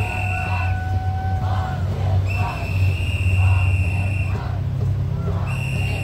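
Protest crowd chanting in rhythm while someone blows long whistle blasts, each held about two seconds and coming every three seconds or so, over a steady low rumble of street traffic.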